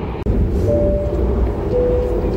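Two-note chime from a passenger train's PA system, a higher tone then a slightly lower one, each held about half a second, over the steady rumble of the coach. It is the signal that precedes an onboard announcement.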